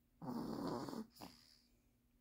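Sleeping toddler snoring: one snoring breath lasting nearly a second, starting a moment in, followed by a faint short breath.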